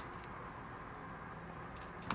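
Faint, steady low background hum with no distinct sound in it.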